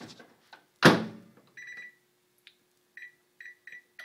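Microwave oven door shut with a thump about a second in, then the keypad beeping as the cooking time is entered: one longer beep, then four short beeps near the end.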